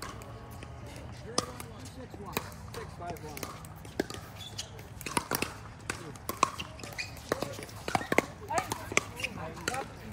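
Sharp, irregular pops of pickleball paddles striking the plastic ball in rallies on this and neighbouring courts, with the hits coming more often from about five seconds in. Players' voices can be heard in the background.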